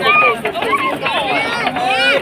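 Several high-pitched voices shouting and squealing excitedly over one another.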